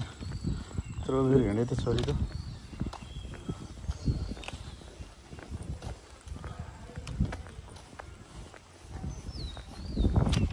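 Footsteps on an asphalt lane with birds chirping, and a low, drawn-out call with a wavering pitch about a second in.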